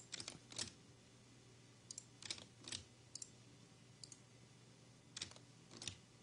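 Faint, scattered clicks of a computer mouse and keyboard in small groups every second or so, over near silence with a faint low hum.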